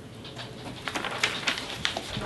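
Sheets of paper being handled and shuffled at a table, a quick run of short crackles and rustles that grows busier about a second in.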